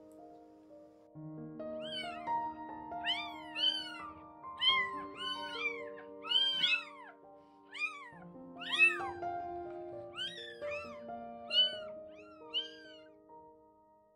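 A three-day-old kitten mewing over and over, about one to two short, high-pitched cries a second, each rising and falling in pitch, while it is handled and weighed. Soft piano music plays underneath.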